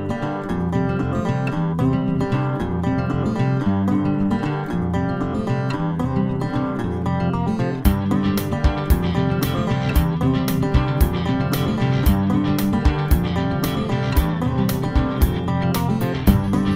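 Background music: a strummed acoustic guitar tune, with a percussive beat coming in about halfway through.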